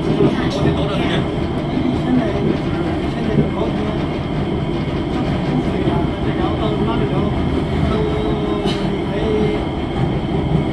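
Cabin noise of a Kawasaki/Sifang C151A metro train running, with its Fuji Electric IGBT-VVVF traction equipment and wheels giving a steady loud rumble as it comes into a station. A brief steady tone rises out of the rumble near the end. The train runs on severely flatted wheels.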